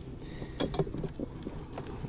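A few light knocks and scrapes of wooden hive frames being handled in a honey super, over a low rumble of wind on the microphone.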